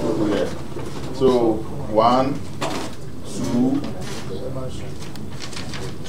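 A few short wordless vocal sounds from people in the room, with pitch rising and falling, over a steady low background hum.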